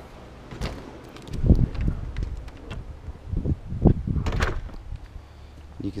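An exterior house door opened and shut, with a series of sharp knocks and thumps from the latch and the door, over low rumbling on the microphone.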